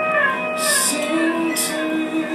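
A live acoustic band playing an instrumental bar between sung lines: held notes from guitar and keyboard over acoustic guitar strums that come about a second apart.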